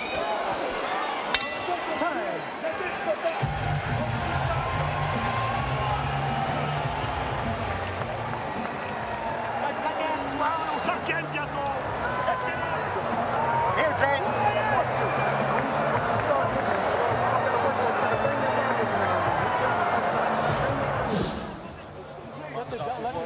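Arena crowd noise of many overlapping voices between boxing rounds, with a single bell strike and short ring about a second in, the end of the round. Music with a steady bass line comes in over the crowd a few seconds later.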